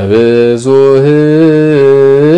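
A man's solo voice singing an Ethiopian Orthodox Ge'ez chant in long held, slowly wavering notes.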